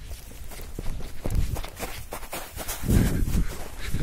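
Quick, uneven footsteps through dry grass, the stalks rustling underfoot with each stride.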